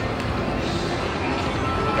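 Dancing Drums video slot machine playing its game music and reel-spin sounds as the reels spin, over a steady background din.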